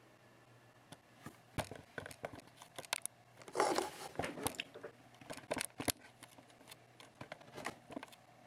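Faint handling noise: scattered clicks and rustles, with a longer scuffing rustle about three and a half seconds in, as a hand holds an iPhone and the camera is moved to it.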